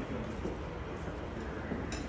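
Steady outdoor background noise with a low rumble and faint distant voices, and one short click near the end.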